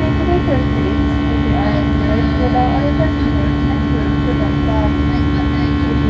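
Airliner engines heard from inside the passenger cabin during the climb after takeoff: a loud, steady drone with a strong, unchanging hum.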